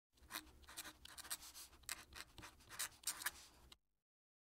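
Fountain pen nib scratching across paper in quick, irregular strokes as a cursive signature is written. The scratching cuts off shortly before the end.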